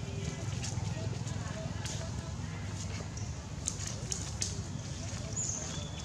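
Outdoor ambience: a steady low rumble with scattered light clicks and rustles, and a few faint, brief calls.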